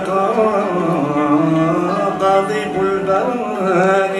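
Arab-Andalusian ensemble playing: upright-held violins, ouds, qanun and mandole carrying one melody together, with voices singing along.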